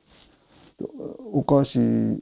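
A man speaking Japanese, his voice starting about a second in after a brief quiet stretch.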